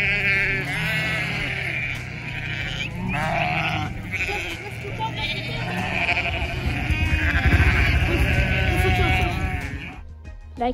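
A flock of sheep bleating, many overlapping calls one after another, over a steady low rumble that swells about seven seconds in.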